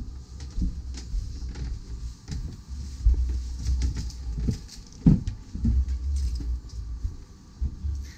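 Handling noise and footsteps from a handheld camera being carried while walking: irregular low thumps and rumbles with scattered knocks, the sharpest about five seconds in.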